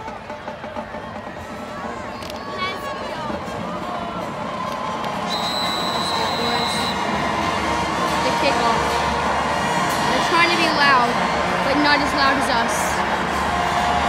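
Football stadium crowd of many voices and cheering, growing steadily louder. A steady whistle blast of about a second and a half sounds about five seconds in, typical of a referee signalling the kickoff.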